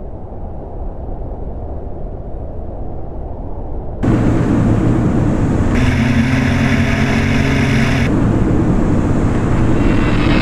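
A low rumble slowly grows louder. About four seconds in, it gives way suddenly to the loud, steady running of a light aircraft's propeller engine in flight, with a droning engine and propeller tone standing out for a couple of seconds in the middle.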